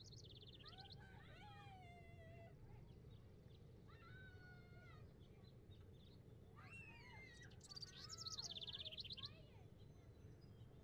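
Faint outdoor ambience with small birds chirping: a rapid high trill at the start and a louder one near the end, with several pitched, gliding calls in between, over a low steady background hum.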